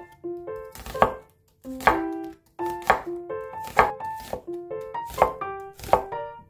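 A cleaver slicing through an onion and striking a wooden cutting board, about six strokes roughly a second apart, over gentle piano music.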